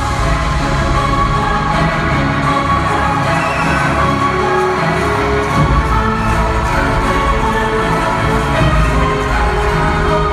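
Arena concert intro music played loudly over the PA, recorded from among the audience, with the crowd cheering underneath.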